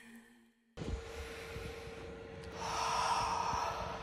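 A man breathing close to a phone microphone outdoors, with one louder breath about three seconds in, just before he speaks. A faint steady hum runs under it. Before that there is a moment of dead silence at an edit.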